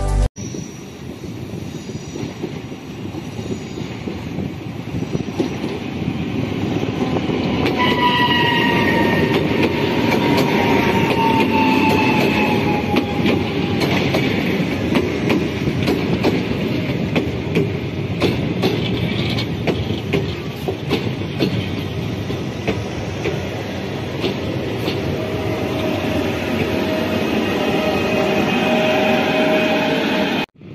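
PKP Intercity passenger coaches rolling past close by, wheels rattling and clicking on the track. About eight seconds in, a high squeal from the running gear sounds for several seconds, and a steady hum comes in near the end.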